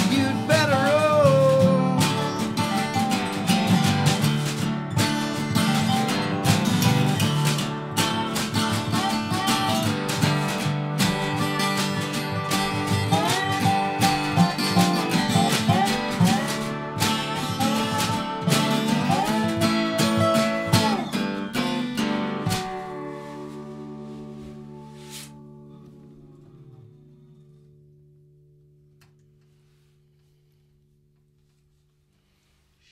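Acoustic trio playing instrumentally: a strummed acoustic guitar, a slide dobro gliding between notes, and a snare drum. About 22 seconds in they stop together on a final chord, which rings out and fades away.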